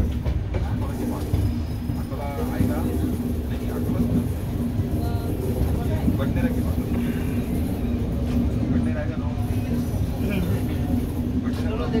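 LHB passenger coach running on the track, a steady rumble of wheels on rails with a steady hum, heard through an open door or window, with a few scattered clicks from the rail joints. People talk in the background at times.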